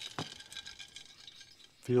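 Light metallic clicks and faint ticks as an aluminium motorcycle cylinder on its stand is handled, with one sharper click early and scattered small taps after it. A man's voice starts near the end.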